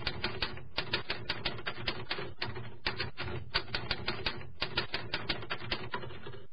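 Typewriter key clicks as a sound effect, rapid and even at about six strokes a second, in runs broken by brief pauses, accompanying on-screen text being typed out.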